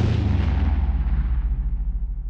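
Deep cinematic boom of a logo-reveal sound effect ringing out: a heavy low rumble that slowly fades.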